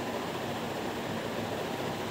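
Steady, even hiss of room noise from a running ceiling fan.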